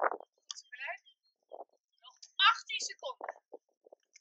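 Brief bursts of voices talking, some of them high-pitched, with short pauses between.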